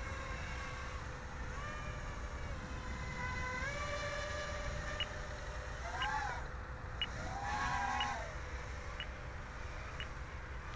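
A small homebuilt quadcopter's motors and propellers whining in flight. The pitch steps and swoops up and down as the throttle changes. Faint short beeps come about once a second in the second half.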